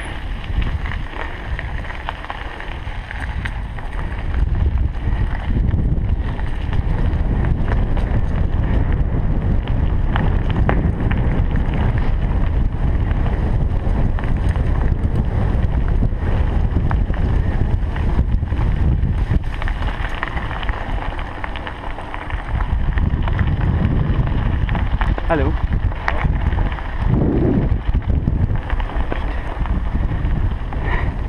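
Wind rumbling on the microphone of a bicycle-mounted camera while riding a gravel trail, with rolling tyre noise and many small knocks and rattles from the bumps.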